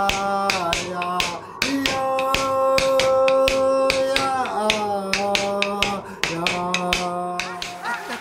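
Greenlandic drum song: a qilaat frame drum struck in sharp, steady strokes about two to three a second, under a singer holding long notes that step down in pitch now and then.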